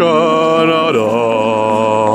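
A voice singing or chanting long held notes with vibrato, about a second each, over a steady low drone of ambient background music.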